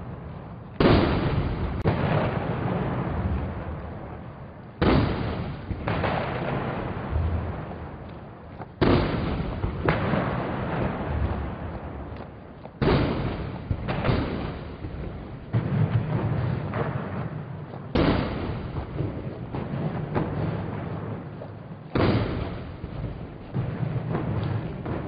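Ceremonial salute cannons firing, a boom about every four seconds, often followed by a second report about a second later, each rolling away in a long echo.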